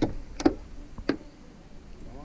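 Three short, sharp knocks, the second the loudest, about half a second apart at first.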